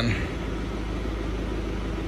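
Steady low hum with a background hiss, unchanging throughout.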